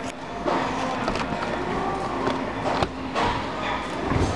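A display dishwasher's door is pulled open by hand, with several separate clicks and knocks of its latch and wire rack, over steady background noise.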